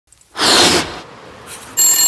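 A short rush of noise, then a steady ringing tone that starts sharply near the end.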